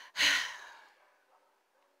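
A woman's sigh: a sudden breathy exhale just after the start that fades out within about a second.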